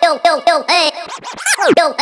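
Electronic novelty dance music built from a pitch-shifted cartoon voice, chopped into rapid arching "hey" syllables at about six a second, scratch-like. About one and a half seconds in, one long swoop rises high and falls back.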